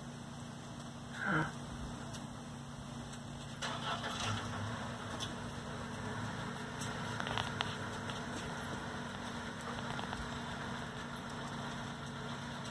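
Steady low hum of an idling vehicle engine, with a short falling whine about a second in.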